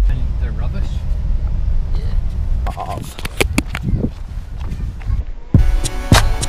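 Low rumble of a car's cabin on the move, with indistinct voices and several sharp knocks in the middle. Near the end the rumble stops and music with a steady beat starts.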